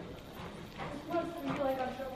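Horse trotting on soft arena sand, its hoofbeats dull and faint. A distant voice joins about halfway through.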